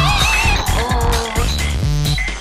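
Electronic music with a steady low beat under a high, wavering squeal that bends up and down in pitch.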